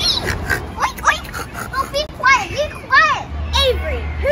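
Children's voices: short, high-pitched excited calls and exclamations overlapping, without clear words. A low rumble comes in near the end.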